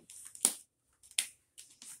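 Two sharp clicks about three-quarters of a second apart.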